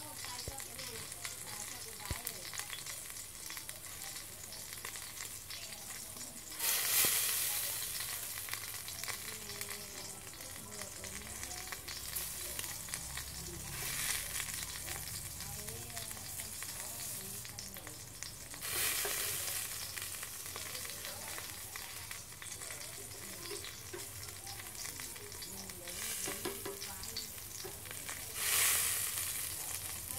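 Meat sizzling on a wire grill rack over hot coals: a steady crackling hiss that swells louder four times.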